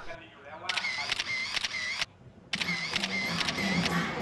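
Sports-day crowd noise: a cheering section chanting in time with quick, regular beats. It cuts out for about half a second near the middle, then resumes.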